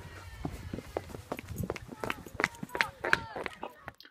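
Quick footsteps of people running across grass, with low rumble on the microphone and faint voices behind.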